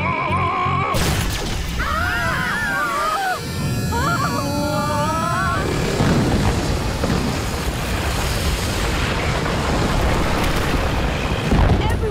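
Cartoon explosion sound effect over dramatic music: a sudden loud blast about a second in, with wavering, warbling tones for the next few seconds. A long, dense rumble of the blast follows from about halfway through.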